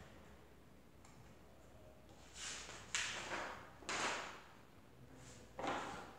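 Paper rustling as the pages of a workbook are handled and turned, in about four short rustles.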